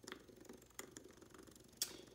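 Cut-open electronic expansion valve head, a 3000-pulse stepper motor with a planetary gear drive, ticking rapidly and faintly as it is pulsed step by step, with a sharper click near the end.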